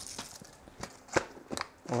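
A few light, sharp clicks, about three of them under half a second apart, against quiet room tone.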